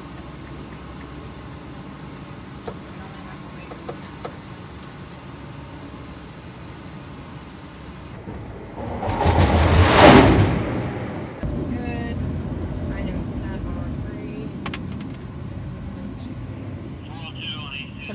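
A jet fighter launched off the carrier's electromagnetic catapult, heard from inside the catapult control bubble over a steady deck rumble. Its engine noise swells over about a second to a loud peak about halfway through, then falls away quickly, leaving a louder steady rumble.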